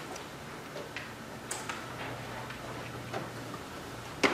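Laptop keyboard keys clicking at an uneven pace as a search term is typed, a handful of separate taps.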